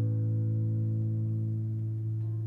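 An A major chord on a classical guitar ringing out after a strum, its notes held steady and slowly fading.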